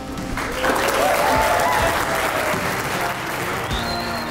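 Wedding guests applauding and cheering right after the kiss that closes the ceremony. The clapping swells in about half a second in, and a voice whoops in the middle; it eases off near the end. Soft background music runs underneath.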